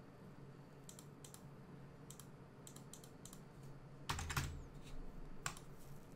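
Faint computer keyboard keystrokes and mouse clicks: a scattered handful of soft, sharp clicks, then a louder cluster with a low knock about four seconds in and one more click shortly before the end.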